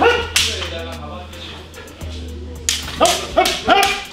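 Katana cuts swishing through the air over a bass-heavy hip-hop beat: one sharp swish about a third of a second in, then three in quick succession near the end, with short shouted cries alongside them.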